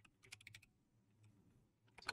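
A few faint computer keyboard key taps in the first half second, then near silence.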